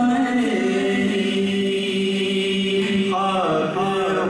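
Unaccompanied Urdu naat sung by male voices into microphones: one long held note, then the melody moves into a new phrase about three seconds in.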